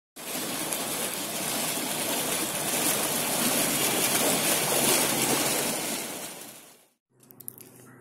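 A fountain jet of water gushing up out of a pool and splashing back onto the surface: a steady rush of water that fades out near the end.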